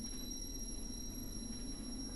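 Faint steady background noise: a low hum and hiss, with thin high-pitched steady whines running through it.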